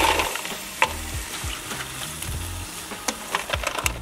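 Damp wood smoking chips dropped by hand into an aluminium pie plate, clattering in at the start, then shifting with scattered light clicks over a steady crackling hiss.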